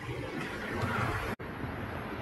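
Carbonated soda poured from a glass bottle into a plastic cup, the liquid splashing and fizzing, with a brief drop-out in the sound about a second and a half in.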